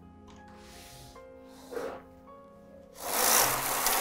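Knitting machine carriage pushed across the needle bed about three seconds in, a rasping slide lasting about a second. Before it there is faint background music with a short scrape near the two-second mark.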